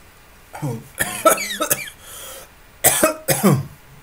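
A man coughing harshly in two bouts, the second about two seconds after the first, each with rough, falling vocal sounds.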